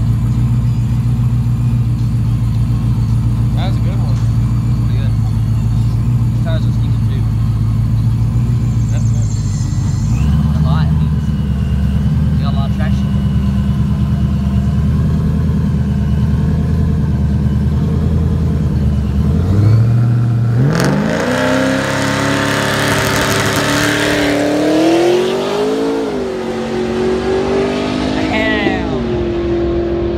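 A car's engine idling steadily at the start line, then launching hard about two-thirds of the way in: the note climbs quickly, dips and climbs again through several gear shifts, and settles into a steady higher note as the car runs away down the track.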